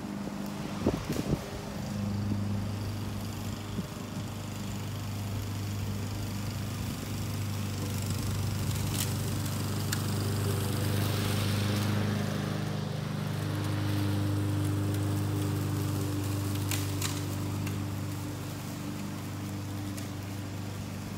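Honda walk-behind push mower's single-cylinder engine running steadily under load as it cuts thick grass, heard from across the street. A few sharp clicks stand out over the engine, about a second in and again twice later.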